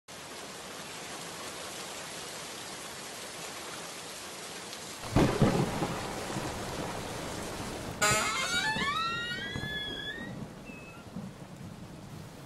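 Steady rain with a loud clap of thunder about five seconds in that rolls off slowly. About three seconds later comes a second sharp burst, trailed by several tones gliding upward.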